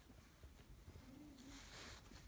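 Near silence: a faint rustle of paracord strands being pulled through the weave near the end, and a faint low wavering hum about a second in.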